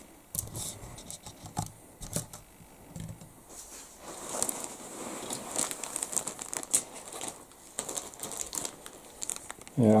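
A clear plastic bag holding model-kit sprues crinkles as it is handled. There are a few light plastic clicks and taps in the first few seconds, then steadier crinkling from about four seconds in.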